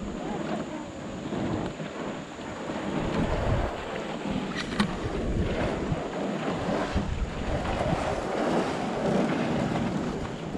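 Wind buffeting the microphone with water splashing against a canoe, a steady rumbling rush; a single sharp click about five seconds in.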